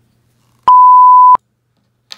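A single electronic beep: one loud, pure, steady tone at about 1 kHz lasting under a second. It starts abruptly about two-thirds of a second in and cuts off sharply, like a bleep sound effect.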